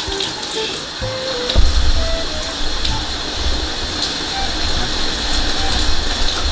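Shower water spraying steadily from an overhead rain shower head, with a low rumble joining in from about a second and a half in.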